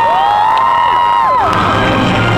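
Audience cheering, with several long high-pitched whoops and screams held over one another, over music.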